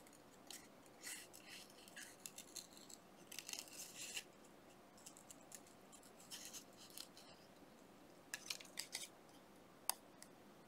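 Small scissors snipping paper, faint: short runs of quick little cuts through the first four seconds, a lull, another run near the end, then a single click. This is fussy-cutting around a small printed image.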